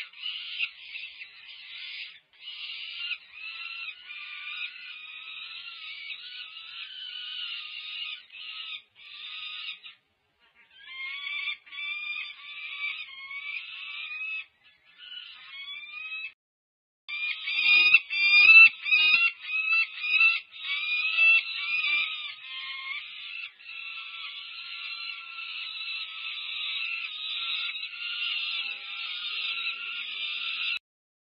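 Peregrine falcon chicks, about five weeks old, begging for food with continuous harsh, wailing calls. The calls grow louder and more agitated for a few seconds about 18 seconds in, with some scuffling.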